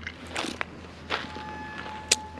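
Close mouth sounds of a person chewing a freshly picked ripe blackberry: three short, wet crunches.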